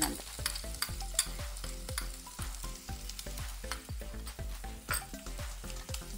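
Minced garlic sizzling in hot oil in a non-stick frying pan, with dense quick crackles and pops, as it is spooned in from a small bowl.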